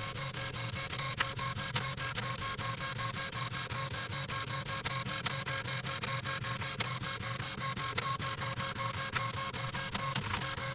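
Dot-matrix printer printing line after line on tractor-feed paper: a steady, rapid rattle of the print head with a few sharper clicks here and there.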